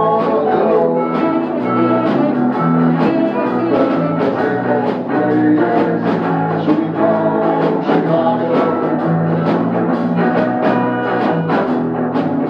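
Live amplified band playing: electric guitar, electric bass and drum kit, with a steady beat.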